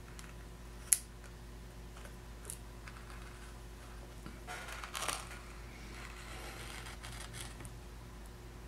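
Small blade scratching as it cuts a thin sheet of Victory Brown wax around a paper template, with one sharp click about a second in and a longer scrape around five seconds in, over a steady low hum.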